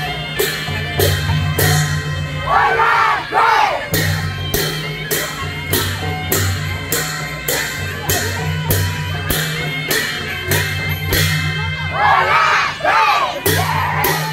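Traditional Newar processional music for a Lakhe dance: metal cymbals clash in a steady beat of about two strikes a second over a low drone. A crowd shouts twice, once about two and a half seconds in and again near the end.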